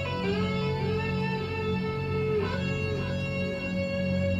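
Instrumental intro of a slow pop ballad backing track: sustained electric guitar notes over a steady low bass, with a new note coming in at the start and another about two and a half seconds in.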